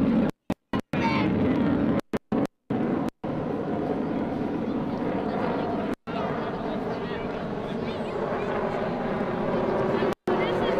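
F-14 Tomcat's twin jet engines in afterburner, a steady, dense jet noise as the fighter passes. The sound cuts out abruptly several times in the first three seconds.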